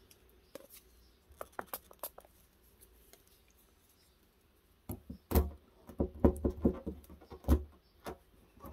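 Plastic scraper and pull tab being worked against a car's body panel: a few faint ticks, then a run of sharper knocks and taps over the last three seconds.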